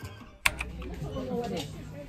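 Street busker music from a violin and acoustic guitar fades out, then a single sharp click about half a second in. Faint background voices follow.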